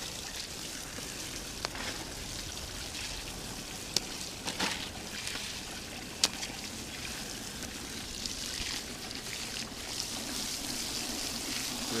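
Water spraying from a hose nozzle onto wet gravel in a plastic classifier sieve over a bucket: a steady hiss and trickle of water washing through the material, with a few sharp clicks.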